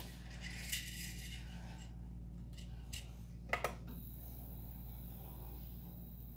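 Faint steady hum of a Prusa MK3S+ 3D printer idling with its hotend already heated, its cooling fan running, with a few light clicks and a short pitched blip about three and a half seconds in.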